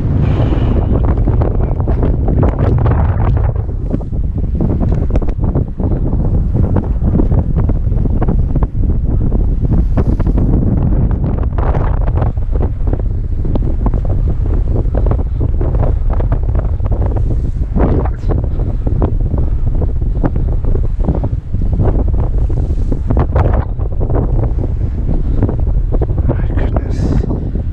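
Strong wind buffeting the camera microphone in gusts, with waves washing against a rocky sea shore underneath.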